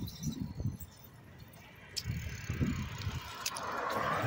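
Sounds of a bicycle being ridden: a couple of sharp clicks and rattles, with a rush of noise building near the end.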